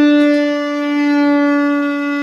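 Conch shell (shankha) blown in one long, steady note, the call that opens the puja.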